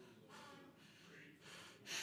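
Near silence with faint room tone; just before the end, a man's quick intake of breath into a microphone.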